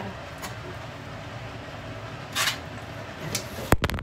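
Handling noise from a phone being moved: a short rustle about halfway through and a few sharp knocks near the end, over a steady low room hum.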